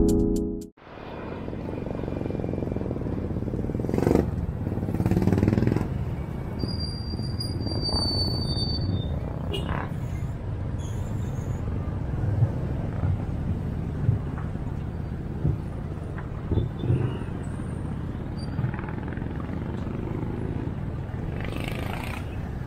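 Intro music cuts off abruptly in the first second, then outdoor urban street ambience follows: a steady low rumble of traffic with occasional light knocks and faint distant voices.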